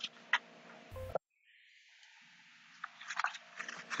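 Sheets of paper being handled and shifted: a few faint crackles, a short dull thump about a second in, then quiet, then light rustling.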